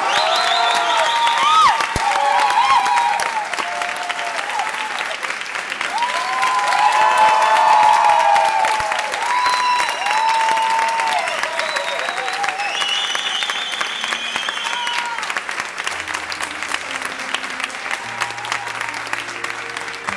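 Concert audience applauding and cheering, with voices calling out over the clapping, loudest in the first half.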